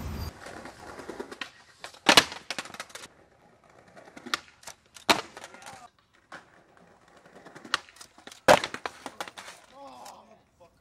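Skateboard hitting concrete and marble stairs: a series of sharp slaps and clatters, the loudest about two, five and eight and a half seconds in.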